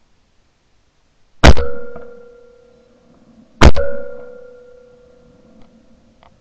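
A shotgun fired twice at a pair of double-trap clay targets, one shot per clay, about two seconds apart. Each shot is followed by a metallic ringing that slowly fades, picked up by a camera mounted on the gun.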